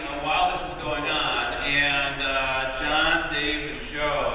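A man's voice over the PA, drawn out into long held notes, half sung like a chant.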